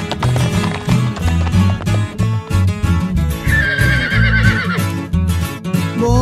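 Instrumental song intro with horse sound effects: hooves clip-clopping over a bass line, and a horse whinnying with a wavering, falling call about halfway through.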